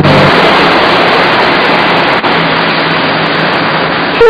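Loud, steady rushing street noise, like traffic passing on the road, with a faint low hum joining about halfway through.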